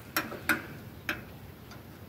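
Three light, sharp clicks in the first second, then fainter ones, from the dial scale's metal pan with a brass scrap piece lying on it.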